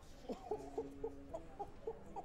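A chicken clucking: a run of short pitched clucks, some bending upward, with one longer held note in the middle, fairly quiet.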